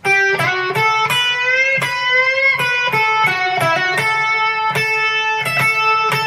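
Electric guitar playing a single-note lead phrase: about a dozen picked notes in quick succession, with one note bent slowly upward in pitch about two seconds in.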